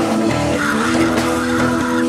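Live rock band playing, with amplified electric guitars holding sustained notes over drums.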